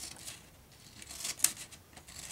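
Scissors snipping through single-layer Tyvek envelope material by hand: a couple of short cutting strokes, with a sharp click about one and a half seconds in.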